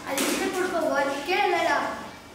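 Speech only: a boy talking.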